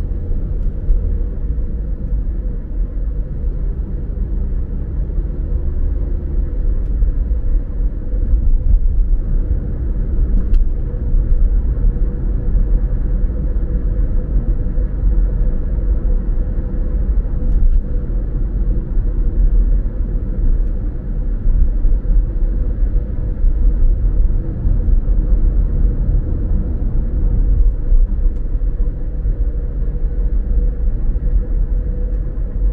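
Steady low rumble of a car driving at road speed, tyre and engine noise heard from inside the cabin, with a faint steady hum above it.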